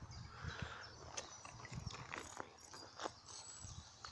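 Faint, irregular clicks and soft knocks of handling noise as the camera and hands move.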